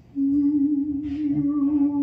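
A woman's voice singing one long, low held note with a slight waver, starting just after the start. A faint hiss comes in about a second in.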